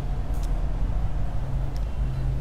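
A steady low hum and rumble in the background, with a couple of faint clicks.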